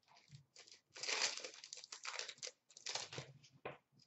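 A trading card pack's foil wrapper being torn open and crinkled, in a run of rustling, crackling bursts loudest about a second in and again around three seconds.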